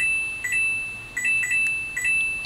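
Simple electronic synth jingle of high beeping tones: pairs of short blips alternating with longer held notes, repeating several times.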